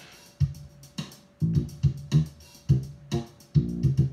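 A programmed bassline groove played back: deep bass notes in a repeating, syncopated funk pattern with short, sharp attacks.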